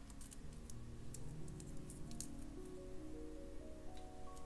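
Soft background music with held notes stepping upward in pitch. Under it are a few faint clicks of glass beads being slid onto a metal head pin.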